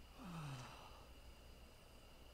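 A man's brief, faint sigh, falling in pitch and lasting about half a second, in near silence.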